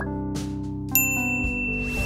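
Outro jingle music, with a bright ding sound effect about a second in, like a notification chime, held ringing for about a second and a half as the subscribe button is clicked.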